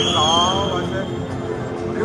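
Music playing over a football stadium's loudspeakers with crowd voices. A high tone rises in at the start and holds for about a second and a half.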